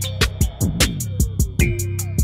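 Background music with a steady beat and deep bass notes.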